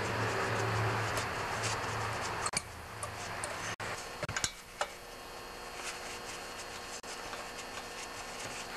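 A few faint clicks and ticks of a screwdriver working the small slotted screws on the intake boot clamp of a Stihl TS420 cut-off saw, over a steady low hum that fades about two and a half seconds in.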